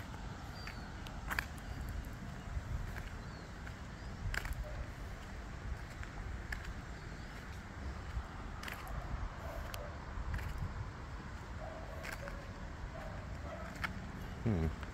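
Outdoor background noise in an open car park: a steady low rumble, a few faint high bird chirps in the first few seconds, and a handful of brief soft knocks.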